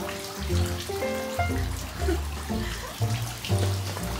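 Background music: a melody of held notes over a bass line that changes note about every half second.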